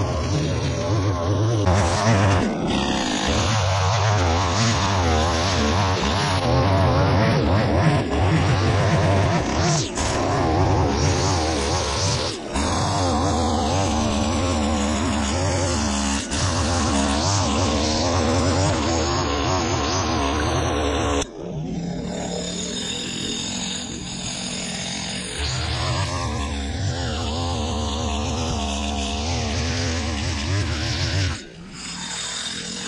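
Stihl petrol line trimmer running at high revs, its nylon line cutting through dry, overgrown grass. The sound drops suddenly for a few seconds about two-thirds through, then comes back.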